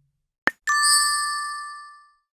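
Logo sound effect: a short pop, then a bright bell-like ding that rings on and fades over about a second and a half.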